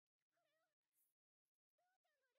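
Near silence, with a few very faint, high-pitched wavering cries: one early on, and another starting near the end.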